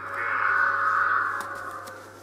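Harsh, raspy sound effect from a film soundtrack, loud at first and fading away about a second and a half in.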